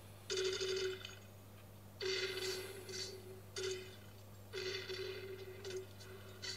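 A telephone ringing on the film's soundtrack, heard through a TV speaker: five bursts of one steady ringing tone, irregular in length and spacing, over a steady low hum.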